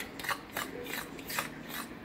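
A fork beating thick casein protein batter in a bowl, its tines scraping and clicking against the bowl in a series of quick, irregular strokes.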